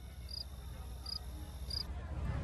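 Cricket chirping sound effect: four short, high chirps, a little under half a second to about half a second apart. It plays as the comic 'awkward silence' after a question goes unanswered.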